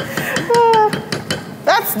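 Wooden spoon knocking and scraping against a pot while stirring a thick soup, a quick run of short clicks.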